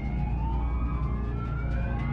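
Horror film soundtrack: a steady deep rumbling drone with siren-like gliding tones that slowly rise and fall above it.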